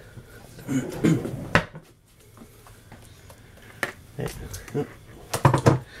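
Low, indistinct talking in a small kitchen, with one sharp click about one and a half seconds in and a cough near the end.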